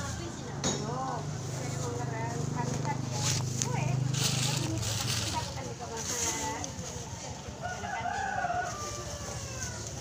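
Market-stall ambience: a thin plastic bag rustling as it is filled, background voices, and a rooster crowing once near the end.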